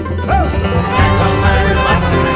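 Acoustic bluegrass band music with banjo and guitar over a steady bass, the full band growing louder about a second in.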